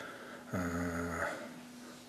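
A man's low, drawn-out hesitation sound, a held 'uhh' of under a second between phrases of speech, flat in pitch and fading off.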